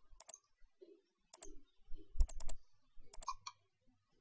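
Computer mouse buttons clicking: a dozen or so sharp clicks at uneven intervals, several in quick pairs and triples, the loudest about two seconds in.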